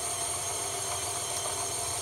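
KitchenAid stand mixer running its meat grinder attachment, grinding boneless pork loin. The motor runs steadily with a high whine throughout.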